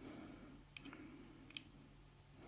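Two faint, short clicks from a titanium-handled folding knife being handled in the hand, a little under a second apart.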